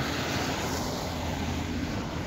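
Steady rushing background noise with a low hum beneath it, even throughout.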